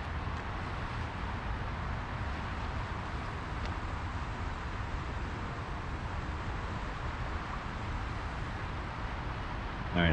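Steady outdoor noise of traffic on the adjacent freeway mixed with the rush of the rain-swollen LA River flowing high in its concrete channel, with a low, uneven rumble underneath.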